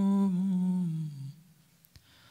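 A man's voice chanting a mournful Arabic recitation into a microphone, holding one long low note that slides down in pitch and fades out a little over a second in.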